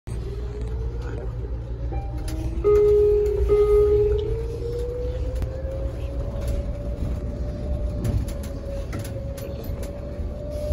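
Inside a moving city bus: an electric drive whine rises slowly in pitch as the bus gathers speed, then holds steady, over the low rumble of the ride. About three seconds in, a louder steady tone sounds for under two seconds.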